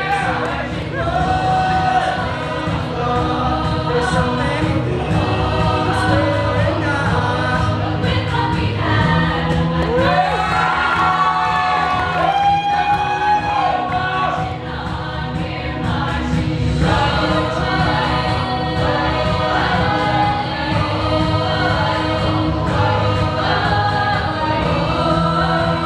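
Large mixed vocal ensemble singing a vocal arrangement of a pop song live, with a solo voice carrying the melody over sustained chords from the full group.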